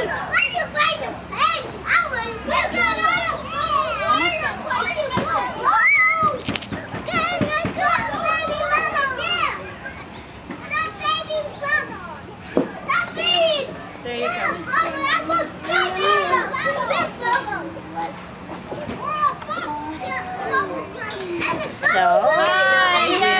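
Young children's voices at play: shouts, squeals and chatter, several overlapping at once, with a short lull about six seconds in.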